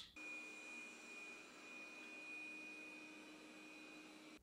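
Robot vacuum running, heard faintly: a steady whir with a thin high whine over a light hiss.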